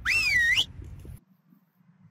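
A short whistle-like glide of about half a second at the start, its pitch rising, dipping and rising again.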